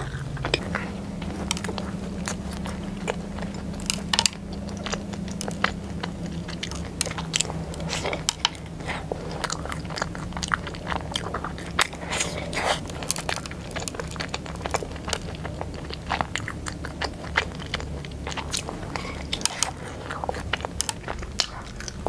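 Close-miked eating of a chocolate-crumb-coated bun with a molten chocolate filling (a Chinese 'zang zang bao'). Bites and chewing give many small crisp crunches and mouth clicks throughout, over a steady low hum.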